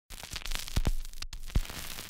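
Faint crackling hiss with irregular sharp clicks and a brief dropout about a second in.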